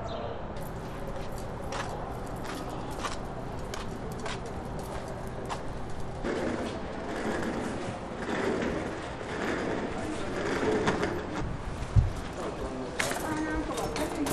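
Outdoor urban ambience under a covered walkway: scattered sharp clicks and knocks over a faint steady hum, then indistinct distant voices from about six seconds in, with a single sharp thump near the end.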